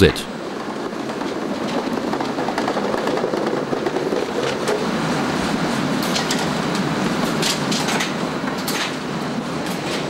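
Roller conveyor running with totes rolling along it: a steady mechanical running noise, with a few sharp clacks from about halfway on.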